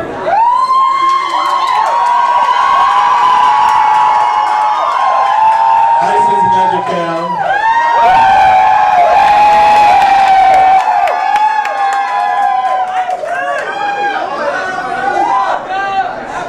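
A crowd cheering and screaming, with many high-pitched whoops and shrieks held for long stretches. It is loudest about halfway through and thins out near the end.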